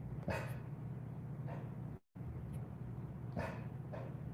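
Bernese mountain dog giving two short, soft woofs about three seconds apart, alert barking at a noise he has heard outside, over a steady low hum.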